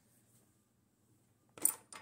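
Near silence: room tone, broken by one short burst of noise near the end.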